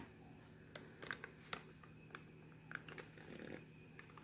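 Near silence: room tone with a dozen or so faint, scattered light clicks and taps.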